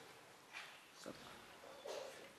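Near silence: room tone with a few faint, brief noises.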